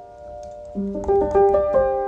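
Detuned upright felt piano played softly: a chord fades away, then a low note sounds about three-quarters of a second in, followed by a quick run of several notes that ring on together as a held chord near the end.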